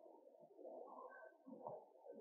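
Near silence: faint room tone of a large hall.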